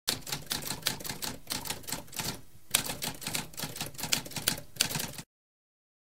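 Manual typewriter typing: a quick run of key strikes, a short pause just before the halfway point, then more strikes until it cuts off suddenly a little after five seconds in.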